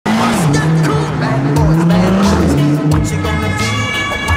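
A car's engine revving hard as it drives past, its pitch rising and falling several times, with music playing over it.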